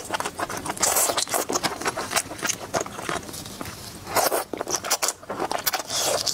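Close-miked eating sounds: biting and chewing red-oil-coated shrimp, a dense run of wet mouth clicks and small crunches. There are louder bursts about a second in and again just after four seconds.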